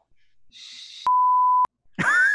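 A single loud censor bleep: one steady, pure high beep of about half a second, starting and stopping abruptly just past the middle, laid over a spoken word. A soft hiss comes just before it.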